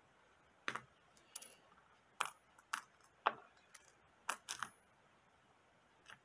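Pennies clicking against one another as they are slid off a coin roll one at a time: about nine sharp, short clicks at an uneven pace.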